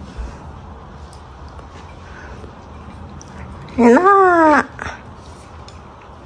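A single drawn-out vocal call of just under a second, about four seconds in, rising then falling in pitch, over quiet room sound.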